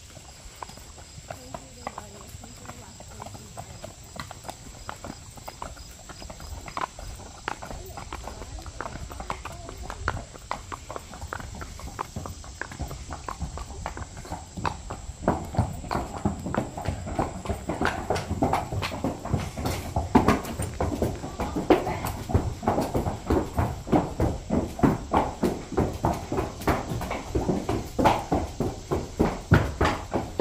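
Several horses walking, their shod hooves clip-clopping in a steady run of knocks. About halfway through, the hoofbeats grow louder and sharper as the horses step onto the wooden plank deck of a covered bridge.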